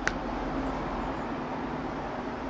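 A short click at the very start, then steady background noise with a low rumble.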